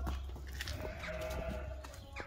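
A sheep bleating once, a single held call of about a second, over a low steady rumble.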